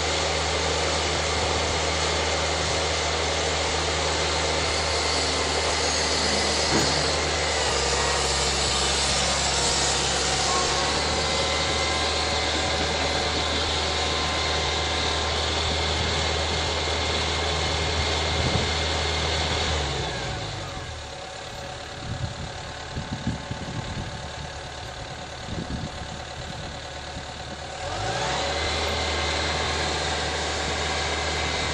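Diesel engine of a tracked excavator running steadily. About twenty seconds in its note drops and it goes quieter, then it rises back up near the end.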